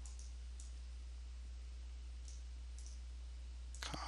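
Two pairs of faint, short computer mouse clicks over a steady low electrical hum.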